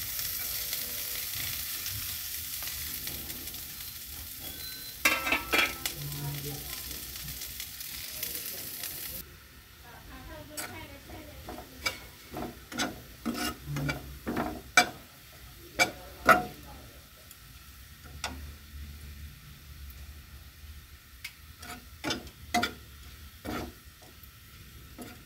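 Sliced onions sizzling in hot oil in a black kadai, the hiss dropping away about nine seconds in. After that, a spatula scrapes and stirs them around the pan in short repeated strokes.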